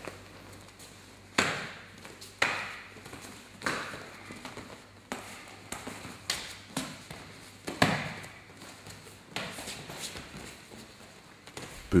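Strikes landing in a stand-up MMA exchange: about seven sharp smacks of punches and kicks, spaced a second or so apart.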